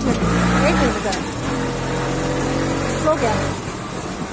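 A motor vehicle's engine running with a steady low hum that drops away about three and a half seconds in, with brief bits of people's voices over it.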